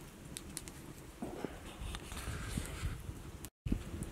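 A Swedish log candle (a log cut in a cross and burning from inside) burning, with faint scattered crackles and pops over a soft steady hiss of flame; the sound drops out for a moment near the end.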